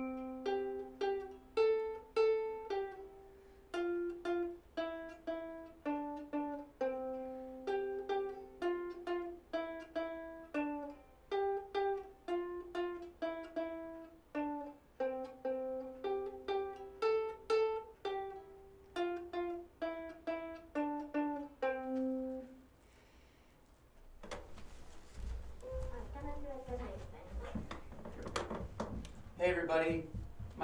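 Plucked string instrument playing a simple single-note melody at a steady moderate pace, each note ringing and dying away; the tune stops a little over 20 seconds in. After a brief pause there is a low rumble with an indistinct voice.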